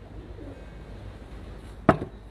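Faint pigeon cooing over a low, steady room hum, with a single sharp knock near the end.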